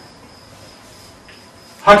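Quiet room tone with a faint, steady high-pitched whine, and a man's voice starting just before the end.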